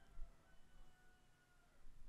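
Near silence: room tone, with a few very faint thin high tones through the middle.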